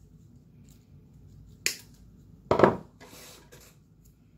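Wire nips snipping the wired artificial boxwood garland once, a sharp click, then a louder knock about a second later and a brief rustle of the garland.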